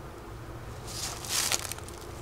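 Steady low hum of a honeybee colony from a frame crowded with bees over an open hive, with a brief rustle of handling about a second in as the frame is turned over.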